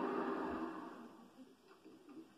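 A short swell of noise from the television that fades away within about a second and a half.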